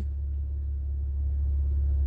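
Steady low rumble of a car, heard from inside the cabin, growing slightly louder through the pause.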